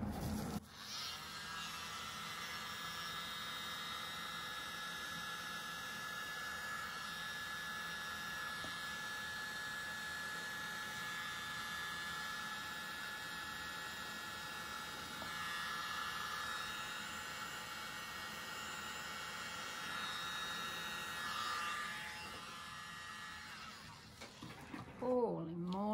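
Small handheld electric blower running steadily with a buzzing hum, blowing across wet poured paint. It starts about half a second in and cuts off just before the end.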